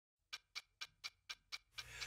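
Seven quiet, evenly spaced clock-like ticks, about four a second, opening a pop song recording. A low hum swells in near the end as the music begins.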